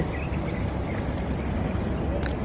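Steady outdoor background noise, a low rumble, with a few faint bird chirps.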